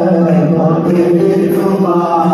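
Male singing through a microphone, holding long steady notes, with oud accompaniment.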